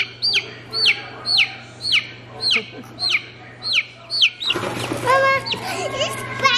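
Baby chick peeping loudly and repeatedly, each peep a short call falling in pitch, about two a second. Near the end the peeping gives way to a child's high, held vocal sound.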